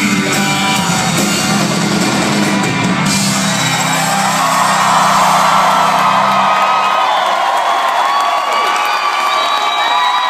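A rock band's final chord ringing out live, stopping about six and a half seconds in. A concert crowd cheers and whoops over it, swelling about four seconds in.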